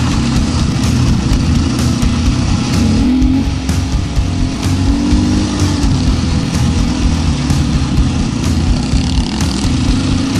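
Off-road vehicle engine running over a rough dirt track, its revs rising and falling a few times, with scattered knocks from the bumpy ground.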